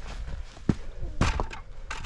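Weathered wooden field gate, hung on a spring with no latch, knocking as it is pushed through and swings shut: one sharp wooden knock just over half a second in, then a quick cluster of knocks a little past one second.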